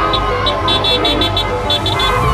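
Car horns honking over street traffic, with held tones and a run of rapid, short, high-pitched beeps through most of it.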